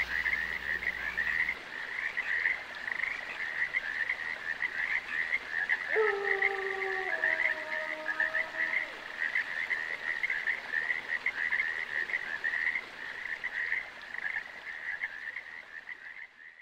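A chorus of frogs calling, a dense, unbroken run of rapid croaks. About six seconds in, a fainter tone enters and steps down in pitch twice, fading by about nine seconds.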